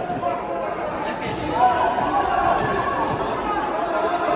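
Indistinct overlapping voices and chatter echoing in a large hall.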